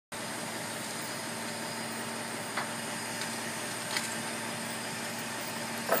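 Crane engine running steadily, a constant machine drone with a faint steady hum, with a few faint short knocks in the middle.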